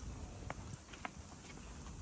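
Footsteps on paving tiles: sharp clicks about two a second at a walking pace, over a low rumble.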